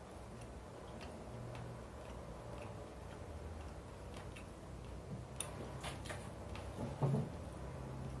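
Chopsticks clicking lightly against a rice bowl while eating: faint scattered ticks, with one louder knock about seven seconds in.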